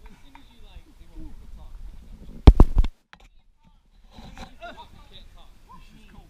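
Faint voices of people talking. About two and a half seconds in comes a short, very loud burst of three or four thumps, and after it the sound drops out for about a second.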